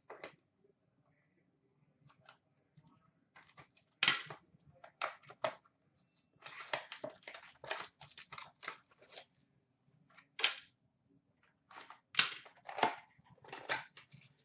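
Shiny trading-card pack wrappers crinkling and tearing as hockey card packs are opened by hand and the cards pulled out, in short irregular rustles with pauses between.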